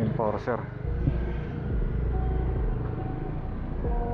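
Kawasaki Dominar 400's single-cylinder engine pulling away from a stop and running on under throttle, its low steady sound dipping briefly about twice and again near the end. A short bit of voice comes right at the start.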